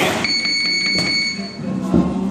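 Electronic boxing round-timer buzzer sounding one steady high-pitched tone for about a second and a half, marking a round in the gym.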